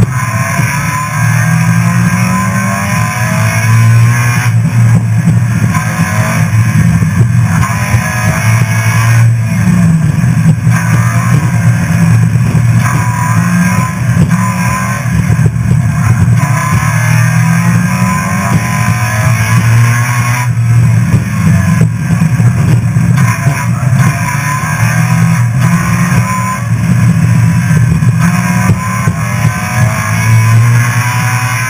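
Car engine driven hard through an autocross course, its revs climbing and falling again and again with throttle and shifts, over tyre noise on concrete.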